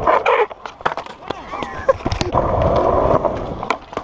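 Skateboard wheels rolling over smooth concrete in a bowl, a steady rumbling that swells about two seconds in, with several sharp knocks and clacks from the board.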